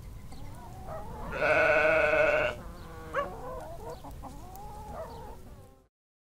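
A sheep bleating once: a single wavering baa lasting about a second, starting about a second and a half in, over a faint background with short chirps.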